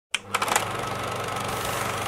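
Racing stock car V8 engines running in a steady drone, heard through archival race broadcast audio, after a few sharp clicks at the very start.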